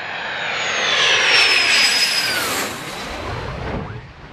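F-16 fighter jet passing low overhead with its high engine whistle gliding down in pitch as it goes by. It is loudest about halfway through and gives way to a low jet rumble near the end.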